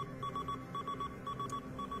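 Rapid, repeated high electronic beeps in short uneven groups over a low steady drone.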